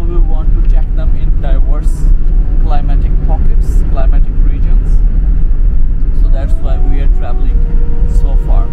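Steady low rumble of engine and road noise inside a moving bus.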